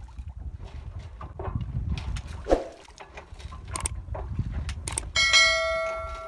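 Wind rumbling on the microphone aboard a sailboat under way, with scattered clicks and knocks. About five seconds in, a bright bell chime rings out and slowly fades: the ding of a subscribe-button notification bell.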